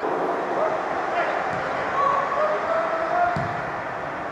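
Footballers shouting and calling to each other on the pitch during a throw-in, short scattered calls over a steady hiss.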